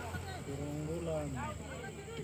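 Faint speech: voices talking quietly, no words clear.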